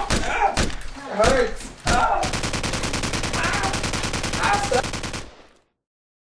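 Gunshots: a few single shots about a third of a second apart, then a rapid burst of automatic fire lasting about three seconds that fades out to silence.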